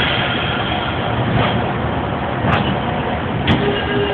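Steady low rumble of a running engine, with two brief clicks about two and a half and three and a half seconds in.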